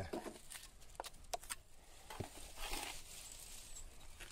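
A small metal spatula tapping and scraping as wet cement mortar is packed into a gap in a stone wall: a few small clicks, then a brief scrape about three seconds in.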